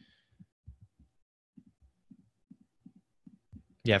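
Near-silent pause broken by a dozen or so faint, irregular low thuds.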